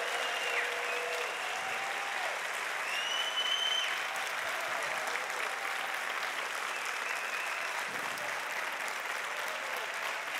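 A large congregation applauding steadily, with a few voices calling out over the clapping.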